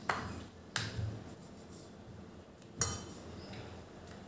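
A wooden rolling pin rolling out dough on a stone rolling board, with soft low rumbles from the strokes. Three sharp clicks and knocks come as the pin and glass bangles strike the board and each other, the third with a short ringing.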